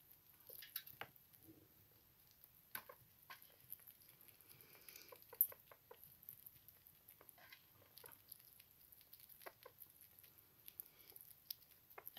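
Faint, scattered small clicks and scratches of sugar gliders moving about and eating in their cage.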